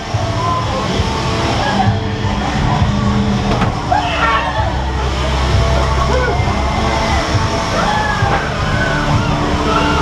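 A loud, steady low droning rumble from a haunted-house scare attraction, with scattered voices and shrieks over it.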